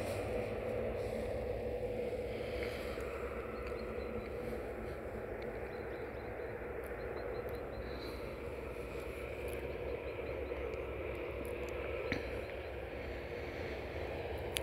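Steady low hum of distant road traffic, with a few faint, short high chirps in the middle.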